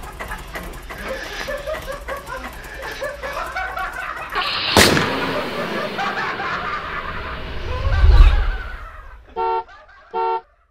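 A logo sound effect: voices at first, then a sharp hit about halfway through and a deep low boom, ending with a short car-horn toot just before the end.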